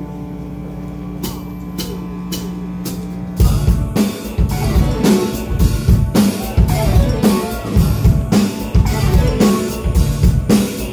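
Live rock band: held, sustained notes with four sharp clicks about half a second apart, then about three and a half seconds in the full band comes in loudly, with drum kit, electric bass, electric guitar and saxophone playing a driving beat.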